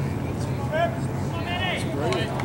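People talking indistinctly close to the microphone, over a steady low hum.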